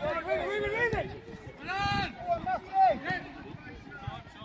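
Voices calling out across a youth football pitch, from players and sideline spectators, with one loud drawn-out shout about two seconds in and a single sharp knock about a second in.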